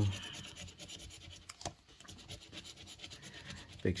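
A metal coin scraping the scratch-off coating from a lottery ticket: a quick run of light, rapid scratching strokes.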